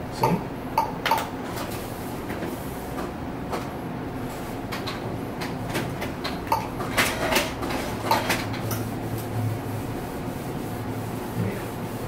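Ultrasound machine console being worked: a scattered handful of short clicks and knocks from its keys and controls over a steady low hum.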